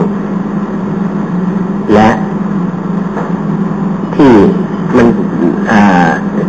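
A steady low hum with hiss underneath, broken by a man's voice saying a few short words.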